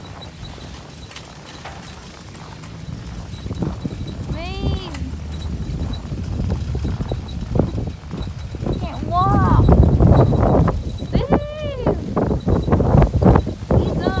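Loaded metal shopping cart pushed over snow-packed pavement, its wheels and basket rattling and clattering, louder in the second half. Four short squeals that rise and fall in pitch cut through the clatter.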